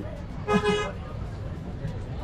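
A vehicle horn gives one short, steady toot about half a second in, over low background noise with faint voices.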